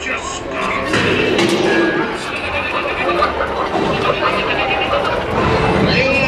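Recorded voices of the ride's animatronic pirates, many of them calling out over one another in a dense jumble of voices, with no single clear line.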